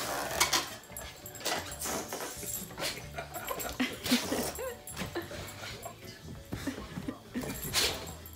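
Cane Corsos giving short whines amid a clatter of clicks and knocks as they jostle around.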